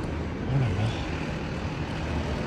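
Steady low background rumble, with a man's short exclamation ("arara") about half a second in.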